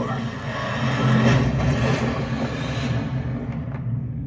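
Film-trailer sound effects played through a TV speaker: a loud rushing, rumbling noise over a steady low drone, swelling about a second in and losing its hiss about three seconds in.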